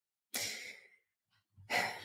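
A person sighs audibly into a close microphone, one breathy exhalation of about half a second that starts a third of a second in and fades away.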